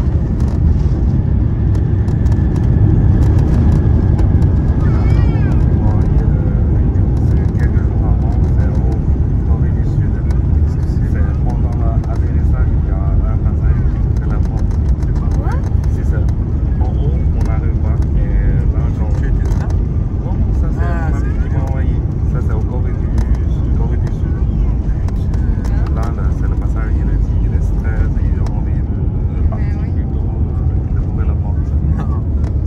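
Steady low rumble inside an Airbus A350 cabin on the ground after landing, with indistinct passenger voices murmuring over it.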